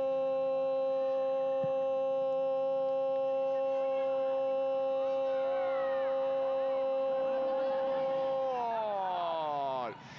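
A TV football commentator's long drawn-out "Gol" shout calling a goal, held on one pitch for about eight seconds, then falling in pitch as his breath runs out and stopping just before the end.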